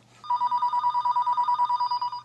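Telephone ringing: a single electronic trilling ring, a high tone pulsing rapidly and evenly, starting just after the start and lasting about two seconds.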